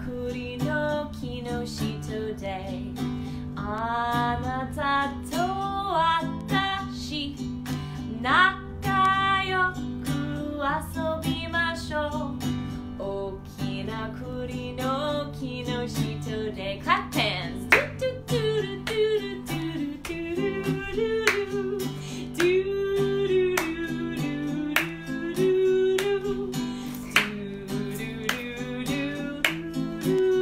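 A woman singing a children's song, plausibly in Japanese, to a strummed acoustic guitar, with a steady strumming rhythm under the melody.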